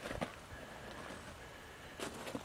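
Heavy rough-sawn pine barn door swinging open quietly on greased pintle strap hinges, with no squeak. A light knock or two just after the start, over faint outdoor background.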